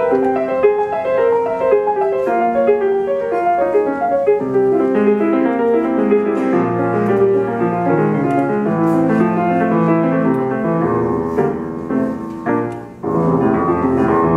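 Grand piano played solo: a fast run of many quick notes, spread from the bass up into the treble. Near the end the sound briefly dies away, then the playing resumes louder.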